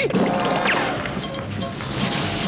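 Cartoon sound effects of a rocket firing off: a loud noisy whoosh with a falling whistle about two-thirds of a second in, over background music.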